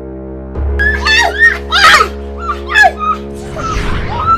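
Background music of steady held chords. From about half a second in, a woman screams and wails over it in several short, loud cries.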